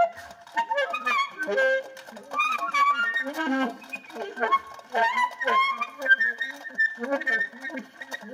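Solo alto saxophone in free improvisation: short, broken phrases with bent pitches, jumping between low notes and high ones.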